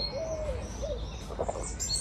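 Garden birds: a pigeon cooing a few short, low notes in the first second, with brief high chirps from small birds near the start and the end.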